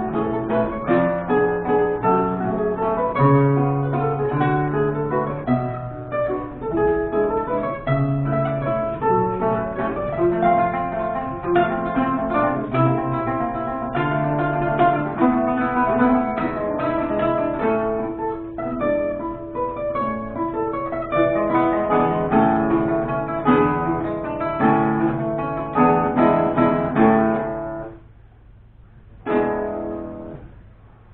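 Two romantic guitars, reproductions of about-1815 Vinaccia and Fabbricatore models, playing a classical guitar duet of plucked notes and chords. The playing stops about two seconds before the end, apart from one short, ringing chord.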